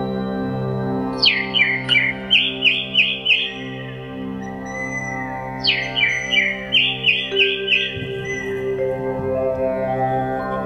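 Two runs of bird calls, each opening with a sharp downward-sweeping chirp and going on as a quick series of repeated chirps, about four a second. Underneath is sustained, drone-like organ-style music.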